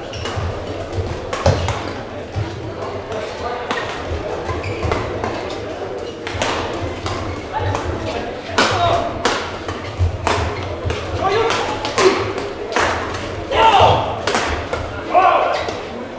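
Badminton rally echoing in a large sports hall: sharp, irregular racket strikes on the shuttlecock and players' feet thudding on the court. A steady murmur of voices runs underneath.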